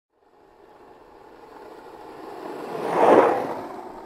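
A whoosh sound effect that swells from silence for about three seconds, peaks, and then fades.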